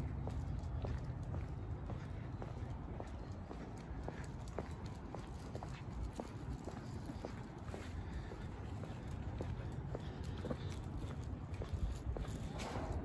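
Footsteps of a person walking on an asphalt road, about two steps a second, over a low steady rumble.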